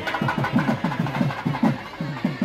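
Fast, even drumming at a temple festival, about seven low strokes a second.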